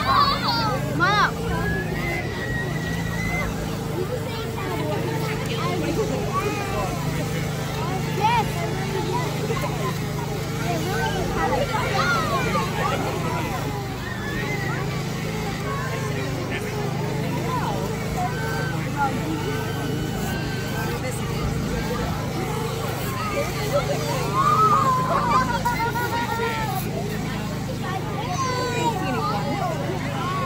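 Crowd chatter and children's voices over a steady low motor hum that shifts in pitch now and then.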